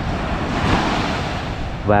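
Small waves breaking and washing up a sandy beach: a hiss of surf that swells in the middle and eases off, over a low wind rumble on the microphone.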